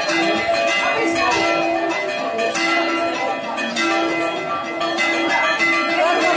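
Church bells of the Odigitria church rung by hand in a festive peal: several bells of different pitch struck in quick succession, their tones ringing on and overlapping, with a deeper bell coming back about once a second.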